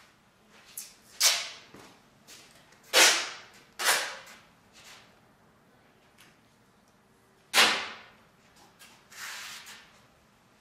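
A roll of tape being pulled off in a series of short, sharp rips, four of them loud, with quieter ones between.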